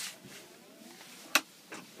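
A single sharp click a little past halfway through, over faint room noise.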